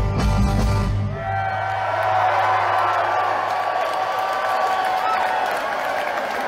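Live rock band's final chord of the song, cut off about a second in, followed by the audience cheering and whooping.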